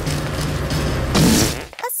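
Cartoon trash-compactor sound effect, WALL-E compacting a furry puppet into a cube: a dense mechanical grinding with a low hum under it and a louder burst a little over a second in, stopping abruptly near the end.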